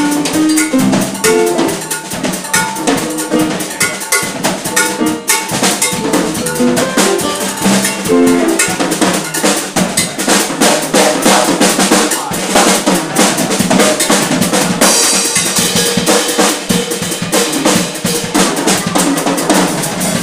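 Live band music led by a drum kit: dense drum strokes with an electric bass line picking out notes in the first half, the drums coming to the fore in the second half with cymbals washing in from about fifteen seconds in.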